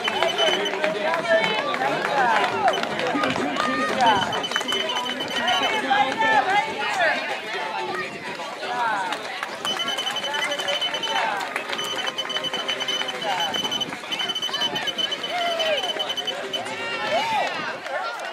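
Race chip-timing system beeping in runs of rapid, high-pitched short beeps as runners cross the timing mats at the finish line, each run lasting about a second and recurring about six times, over the chatter of background voices.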